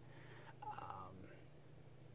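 Near silence: quiet room tone with a low steady hum, and a faint breathy sound from about half a second to a second in.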